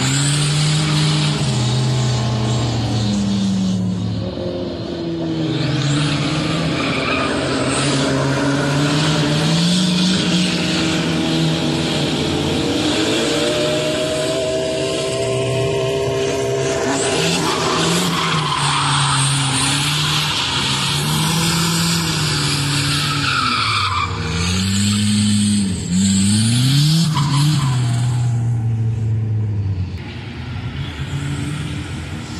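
Nissan Hardbody pickup's engine revving up and down again and again while its tyres squeal and skid as the truck slides sideways and spins out.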